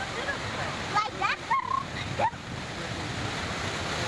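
Sea waves breaking and washing over a rocky shore: a steady rush of surf. In the first half, a few short, high calls rise and bend in pitch over it.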